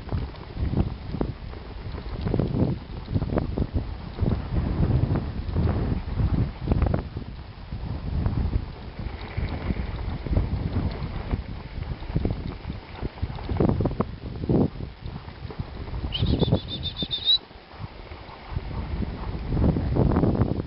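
Wind buffeting the microphone over the low, uneven rumble of a dog-drawn rig running along a snowy track as a team of malamutes pulls it. A brief high-pitched squeal cuts in about sixteen seconds in and lasts about a second.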